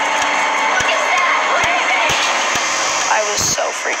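Several young voices shouting and screaming over one another in fright, over a dense, noisy soundtrack scattered with sharp clicks.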